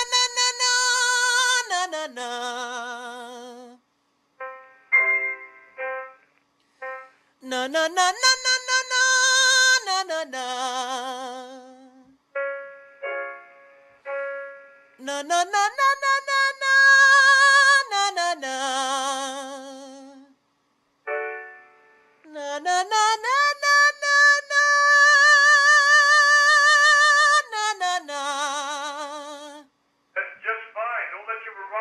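A high male voice sings a slow vocal-training exercise four times, with piano chords between the phrases. Each phrase scoops up to a high held note with a wide vibrato, then drops to a lower held note.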